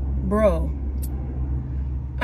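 Steady low rumble of a car with its engine running, heard inside the cabin. A short vocal sound from the person in the car comes about half a second in.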